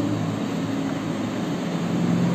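Steady low mechanical hum of several level tones, like a running fan motor, with no distinct knocks or taps.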